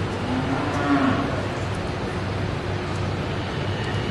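A heifer moos once, a call of about a second that rises a little in pitch and falls away, over a steady background hum.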